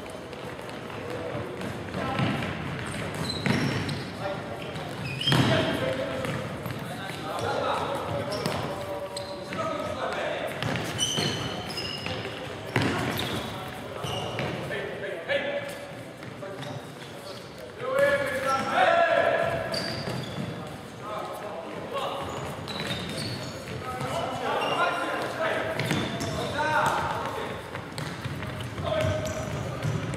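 Futsal match play in a large sports hall: repeated thuds of the ball being kicked and bouncing on the wooden court. Players shout at intervals, loudest a little past the middle and again near the end.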